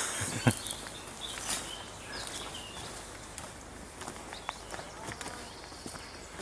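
Footsteps of a walker on a woodland footpath, with a few short bird chirps over a steady outdoor hiss.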